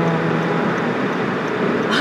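Steady road and engine noise of a car driving at highway speed, heard inside the cabin. A drawn-out vocal hum fades out about half a second in.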